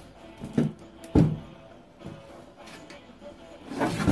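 Clunks and knocks as a handheld angle grinder, switched off, is handled and set against the Beetle's sheet-steel floor pan: three knocks, the loudest about a second in and another near the end.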